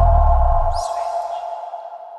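Electronic TV channel ident sting: a deep booming low tone that cuts off about a second in, under a steady ringing synth tone that slowly fades, with a brief high swish near the middle.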